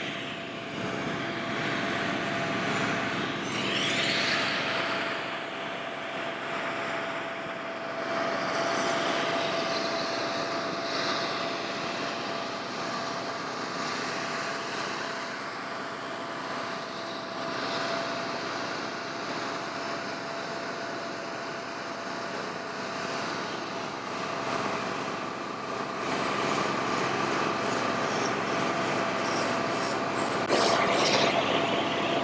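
Rotary floor machine (the kind used to buff store floors) sanding down a patched hardcourt tennis court, powered by a portable generator: a steady grinding noise with a constant hum. It grows louder near the end, where rasping scraper strokes on the court surface join in.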